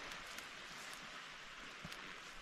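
Faint, steady outdoor hiss of coastal ambience, with one light click shortly before the end.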